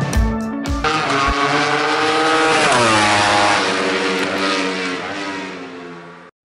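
Ducati 1299 Panigale's L-twin engine revved high, its pitch sliding down about three seconds in and the sound fading away near the end. Rock music with drums plays for the first second before it cuts to the engine.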